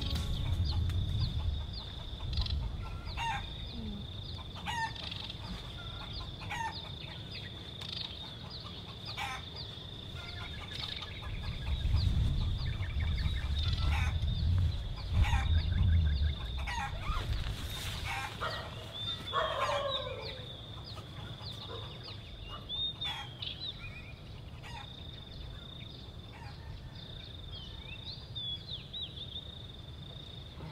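Roosters crowing and birds calling over a steady high-pitched drone. A low rumble swells through the middle.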